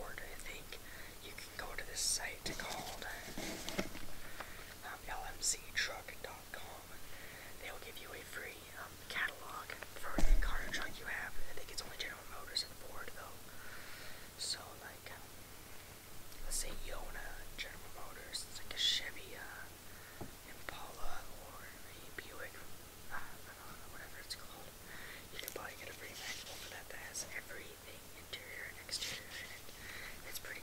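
A person whispering close to the microphone, with soft breathy syllables and crisp s-sounds. A brief, louder low thump comes about ten seconds in.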